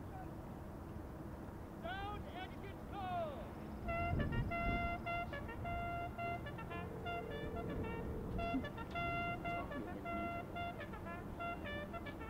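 Shouted drill commands, then a bugle call of short notes repeated on one pitch with a longer, lower held note in the middle.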